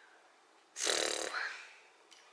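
A single breathy exhale from a person, about a second long, starting a little under a second in and fading away.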